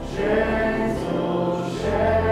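A church congregation singing a slow hymn together, led by a man's voice at the pulpit microphone, over instrumental accompaniment. A new sung phrase swells just after the start, and a low bass note comes in near the end.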